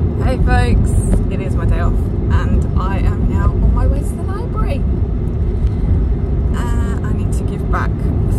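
Car being driven, heard from inside the cabin: a steady low road and engine rumble, with a woman's voice over it for much of the time.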